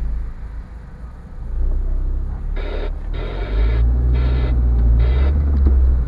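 Low rumble of a car's engine and tyres heard from inside the cabin as the car pulls away from a standstill, growing louder about a second and a half in and again midway, with four short bursts of sound higher up in the middle.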